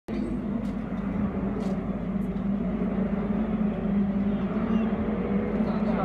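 Steady low drone of racing car engines running at an even pitch, with no revving or passing rises.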